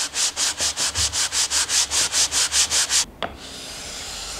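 Wood being sanded by hand in quick back-and-forth strokes, about six a second for some three seconds. A click follows, then a steady hiss.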